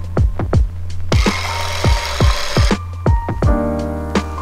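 Electric hand mixer running for about a second and a half in the middle, over background music with a deep kick-drum beat.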